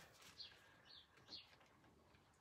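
Near silence: room tone, with three faint, short, high-pitched chirps in the first second and a half.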